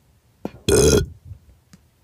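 A single loud burp, about a third of a second long, with a short click just before it.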